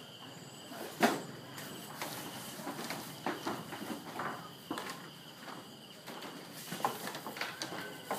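Footsteps and knocks on a slatted bamboo floor, irregular, with a sharp knock about a second in, over a faint steady high-pitched drone.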